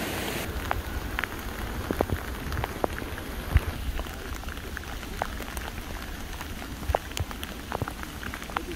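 Rain pattering as scattered, irregular ticks over a low rumble. In the first half second a steady rush of floodwater is heard before it cuts off.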